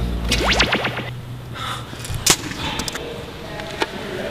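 Comedy sound effects: a quick rising swoosh as the backing music cuts off, then two sharp cracks about a second and a half apart.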